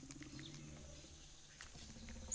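Near silence: faint background ambience with a low steady hum and a few soft ticks.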